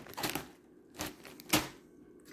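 A plastic bag of potato chips being handled, giving three or four short crinkles.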